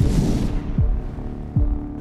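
Trailer sound design: a heavy low hit, then deep bass pulses about every 0.8 s, each sliding down in pitch, over a low steady drone.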